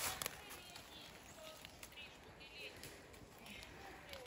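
Quiet forest floor: faint rustling and a few soft clicks of movement through dry fallen leaves, with faint high chirping calls of a small bird in the background.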